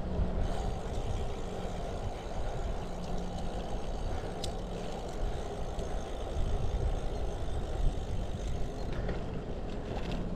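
Steady wind rush on the microphone and tyre noise from a road bike being ridden along a paved street, with one short tick about halfway through.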